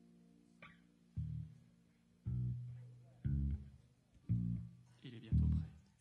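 An amplified guitar being tuned: a single low string is plucked five times, about once a second, each note ringing out and fading before the next.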